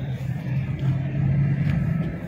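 Car engine and tyre noise from inside a moving car: a steady low hum that grows a little louder about halfway through.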